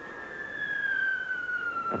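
A single high tone held throughout, sliding slowly and steadily down in pitch, with a faint overtone above it.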